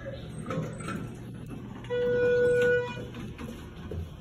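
Elevator arrival chime: a single steady electronic beep lasting just under a second, about two seconds in, signalling that the car has arrived at the floor.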